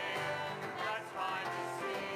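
Worship song performed by a small church band: several voices singing together over strummed acoustic guitar.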